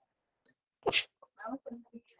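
Faint, muffled human vocal sounds: a short breathy burst about a second in, followed by a few brief, quiet murmured syllables.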